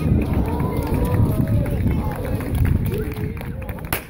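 Dancers' feet stamping and shuffling on concrete, with voices calling out, in a dance of devils. One sharp crack comes just before the end.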